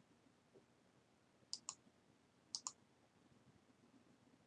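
Two computer mouse clicks about a second apart, each heard as two quick ticks, against near silence.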